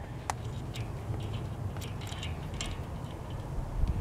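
Faint scattered clicks and ticks of a hand handling a unicycle crank at the axle end, with one sharper click shortly after the start, over a steady low rumble.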